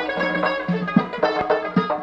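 Uzbek folk song in an instrumental passage between sung lines: a plucked string instrument plays a quick, rhythmic run of notes over a sustained low note.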